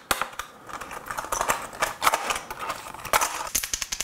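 Crinkling and crackling of a plastic lure package being opened. Near the end, a Quake Thud 70 lipless crankbait is shaken and its single knocker clacks rapidly.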